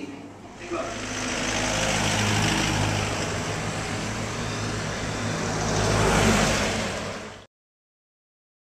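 Traffic noise from a moving car on a highway: a steady rush of tyres and wind over a low engine hum, swelling briefly near the end before stopping abruptly.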